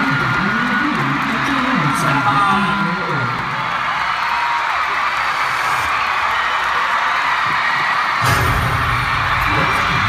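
Arena crowd noise with scattered screams over music from the PA. A low pulsing beat runs underneath, and about eight seconds in a heavy bass comes in loudly.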